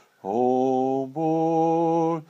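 A man singing a gospel hymn solo and unaccompanied: two long held notes, the second a little higher than the first.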